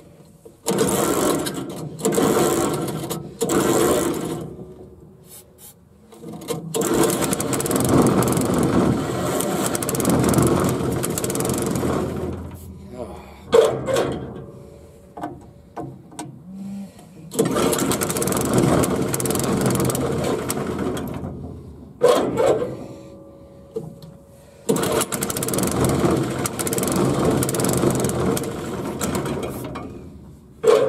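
Small gasoline engine on an irrigation wheel-line mover being pull-started again and again. It gives a few short bursts, then catches three times and runs for several seconds before dying away each time. It will only run on starting fluid, a sign of a carburettor fuel-supply fault.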